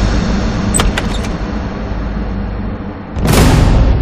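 A steady low rumbling drone from the background score, with a few faint clicks about a second in, then a sudden loud burst of noise about three seconds in as the door is thrown open.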